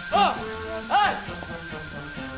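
Water spraying hard out of a leaking kitchen faucet and splashing over the sink: the faucet is still broken after a plumber's repair.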